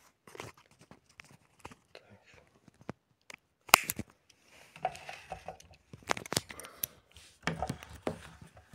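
Handling noise from a camera phone being moved over and set down on a wooden table: scattered clicks, scrapes and rustles, the loudest a sharp knock a little under four seconds in.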